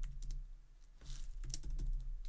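Typing on a computer keyboard: a run of quick keystrokes, a short lull about half a second in, then another run of keystrokes.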